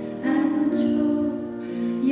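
A woman singing a slow Korean song into a microphone, holding two long notes, with piano accompaniment.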